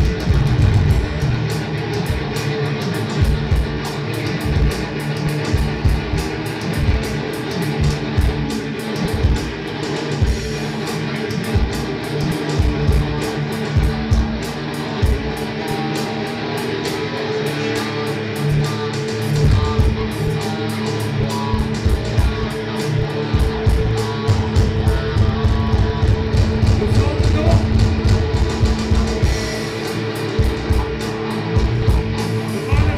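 An instrumental stoner-doom rock band playing live: electric guitar over drums, dense and continuous with steady held low notes and regular drum hits.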